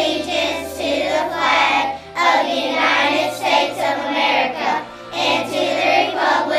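A class of young children singing a patriotic song together with hands on hearts, over instrumental backing.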